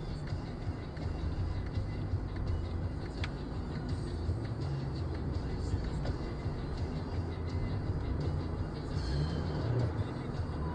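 Engine and road noise inside a moving car, picked up by a dashboard camera's microphone: a steady low rumble.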